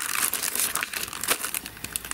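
Clear plastic die packets crinkling as they are handled, a busy run of small crackles.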